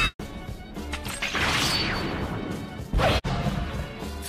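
Anime fight sound effects over background music: a long crashing rush of noise, then a sharp hit about three seconds in.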